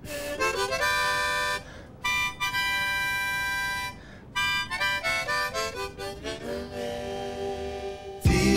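A harmonica played solo. A few short notes lead into long held chords with short breaks between them, then a quick run of notes about halfway through, ending on a held chord.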